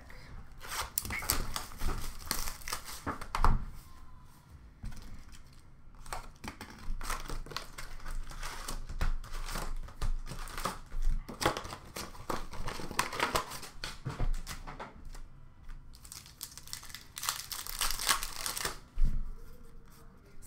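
Plastic wrapping and trading-card pack wrappers being torn open and crinkled by hand as a box of hockey cards is unwrapped, in irregular bursts that are loudest in the first few seconds and again near the end.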